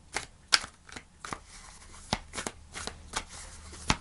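A deck of tarot cards being shuffled by hand: a string of irregular sharp snaps as the cards drop and strike each other, with soft rustling between them.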